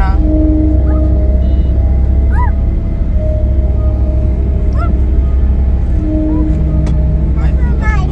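Road noise inside a moving car's cabin: a steady low rumble, with a few brief pitched tones and short calls above it.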